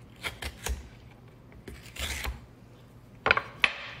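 Metal spoon scraping the stringy flesh and seeds from inside a halved delicata squash: a few short scrapes, then a longer scrape about two seconds in. Near the end come two sharp knocks as the spoon is set down on a wooden cutting board.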